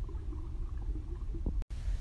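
Low steady background rumble with a faint hum, cut off for an instant near the end.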